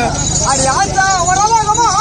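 A performer speaking in a high voice whose pitch swings up and down, over a steady low hum.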